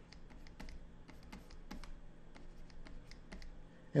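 Plastic stylus nib tapping on a pen display's screen as short strokes are drawn: a dozen or so faint, irregular light clicks.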